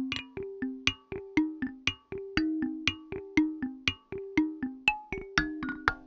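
Omnisphere's 'Intimate Bouncing Mallets' synth patch playing its sequenced pattern dry, before any phaser is applied: short struck mallet notes, about four a second, that blip up and down between two main pitches.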